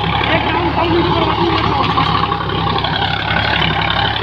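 Sonalika tractor's diesel engine running steadily under load while it drives an Amar rotavator through the soil.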